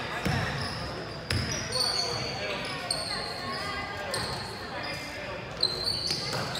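Basketball bouncing on a hardwood gym floor as it is dribbled, with short high sneaker squeaks and players' voices echoing in the hall.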